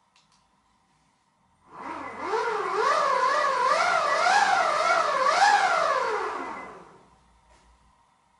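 Electric skateboard's motor spinning the wheels up under throttle, with no load: a whine that rises, wavers up and down several times with the throttle, then falls away as the motor spins down.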